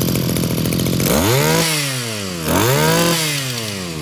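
Zenoah GE2KC brush cutter's small two-stroke engine idling, then revved twice: each time the pitch rises quickly and falls back towards idle.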